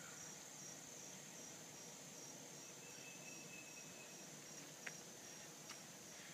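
Quiet outdoor ambience: a steady, high-pitched chorus of insects, with two faint clicks near the end.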